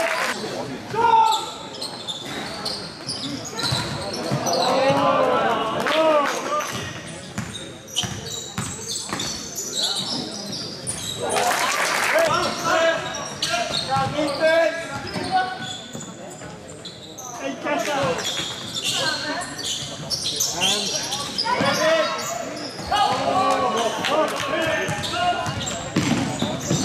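Basketball game sounds in a large sports hall: the ball bouncing on the court among scattered knocks, with shouting voices of players and spectators several times, all carrying the hall's echo.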